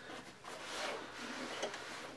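Camouflage fabric rifle bag rustling and rubbing as it is handled, with a few faint ticks from its straps and fittings.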